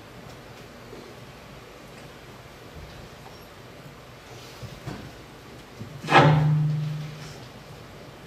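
A metal folding chair scraping on a stage floor as it is pulled out and sat on: one short, loud grating groan about six seconds in that fades over about a second, after a few soft knocks of footsteps and handling.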